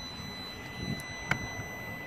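A low background rumble with one sharp click a little past the middle, from a hand handling the car's interior controls.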